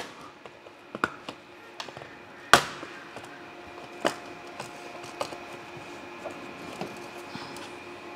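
Bottom cover of an HP EliteBook 840 G7 laptop being pried off: a string of sharp clicks and snaps as its clips let go, the loudest about two and a half seconds in. A faint steady tone runs underneath.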